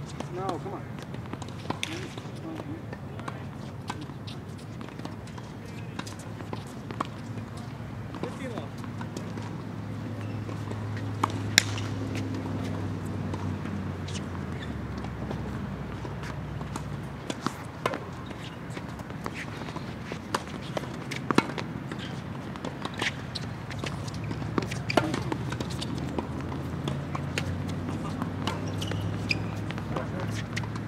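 Tennis balls struck by rackets and bouncing on a hard court: sharp pops scattered through, the loudest about a third of the way in and again past two thirds, over a steady low hum.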